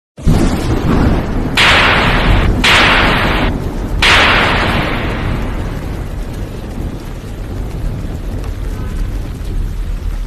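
Channel-intro sound effects: a deep rumble with three loud bursts of hissing noise about a second apart, the last one slowly fading away into the rumble.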